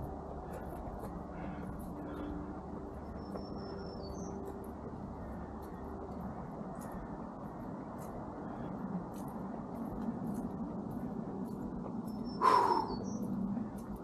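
Footsteps and steady breathing of a winded walker on a paved woodland trail, over a low steady background rumble. A bird gives a short high chirp a few seconds in and again near the end, when the walker also lets out a louder breathy exhale.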